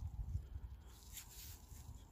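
Quiet low rumble with a brief soft rustle just past the middle, as a muddy work glove shifts near the find.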